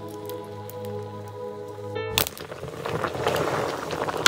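Background music holding steady tones for the first two seconds. About halfway in it gives way to a pot of stinging-nettle (kandali) greens boiling over a wood fire, a spluttering hiss with small clicks of a metal ladle stirring the leaves.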